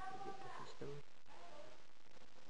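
A short high-pitched vocal call near the start, followed by a brief low-pitched voice sound about a second in.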